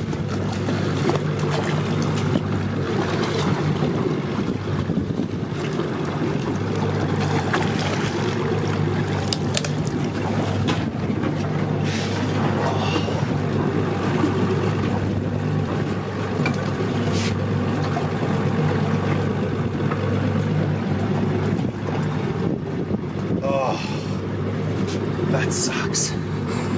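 Boat engine running with a steady low hum, with wind and sea noise over it.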